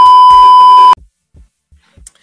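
Television test-card tone over colour bars: a loud, high, steady beep lasting about a second that cuts off abruptly.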